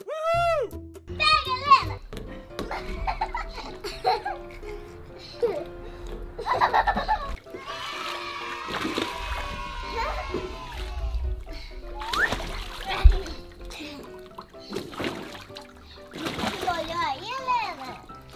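Children splashing and playing in an inflatable pool, with excited children's voices and a sharp knock about 13 seconds in, over background music.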